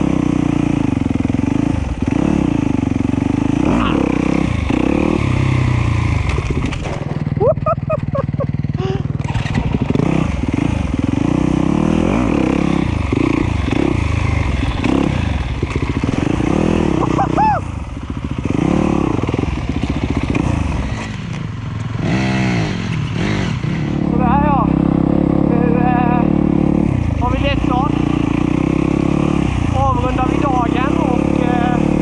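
A Yamaha YZ250F dirt bike's single-cylinder four-stroke engine, heard from on the bike while riding, its revs rising and falling continually through the gears. It eases off the throttle briefly a few times midway.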